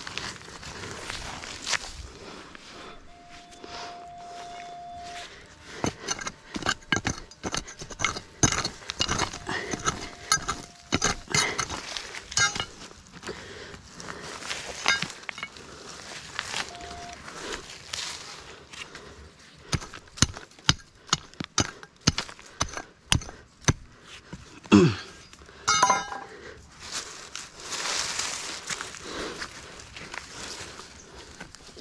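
Gloved hands digging out soil and loose stones beneath a rock, with many small sharp clicks and knocks as stones strike one another. A short steady tone sounds a few times, about three seconds in and again around ten and seventeen seconds.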